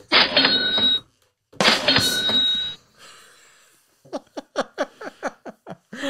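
Sound effects fired from the sound pads of a RØDECaster podcast mixer: two loud bursts in quick succession, each about a second long with a steady ringing tone through it, set off by buttons being mashed.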